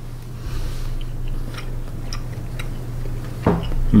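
A person chewing a mouthful of rice topped with crunchy Sichuan chili crisp, with faint scattered small crunches, then a short 'hmm' from the mouth near the end.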